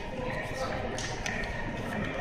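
Light handling noise of a Nikon Coolpix compact camera and its anti-theft security block being turned in the hand: a few soft taps, about a second in and again near the end. Under it runs a steady shop background with faint voices.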